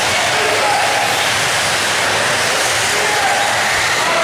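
Several 1/8-scale nitro RC buggy engines buzzing together in a large indoor hall, a steady dense whine with faint pitches rising and falling as the cars throttle up and back off.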